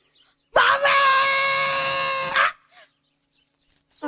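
An animal cry held on one steady pitch for about two seconds, starting about half a second in and cutting off abruptly.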